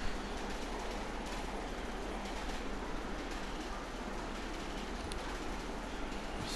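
Steady background hiss of room and microphone noise, with a faint click about five seconds in.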